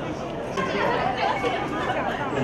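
Several people talking at once in a large, busy room: overlapping chatter of a crowd of guests, livelier from about half a second in.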